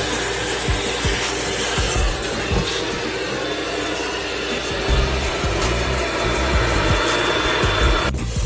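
HEPA-filter vacuum running steadily with a thin whine, its hose nozzle sucking German cockroaches out of the slots of a wooden knife block. Background music with a beat plays underneath.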